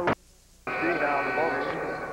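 Television play-by-play commentary, a man's voice over the arena sound. It breaks off for about half a second of near silence at a splice, then resumes.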